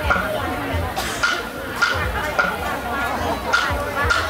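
Music for a traditional Cao Lan candle dance: a percussion beat struck evenly about once every 0.6 seconds, each strike ringing briefly, with voices over it.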